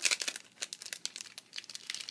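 Clear plastic packet of buttons crinkling as it is handled: a quick run of crackles that thins out after the first half second into scattered crackles.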